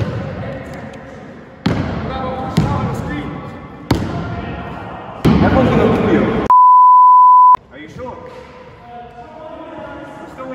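A steady beep tone lasting about a second cuts in about six and a half seconds in and blanks out all other sound: a censor bleep over a word. Around it, voices and a few sharp knocks of a basketball bouncing on the wooden floor echo in a large sports hall.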